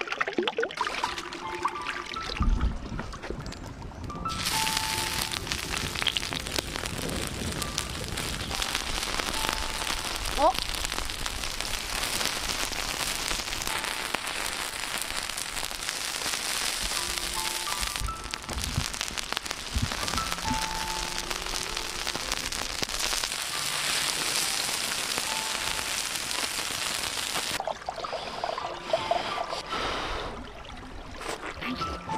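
Lattice-cut pineapple sizzling as it fries in oil on a hot stone, a dense steady hiss from about four seconds in until shortly before the end. Background music with light melodic notes plays throughout, and the opening seconds carry running stream water.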